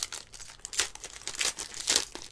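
Foil wrapper of a Mosaic basketball card pack being torn open and crinkled by hand: irregular crackling and ripping, with louder tears about three-quarters of a second in and near the end.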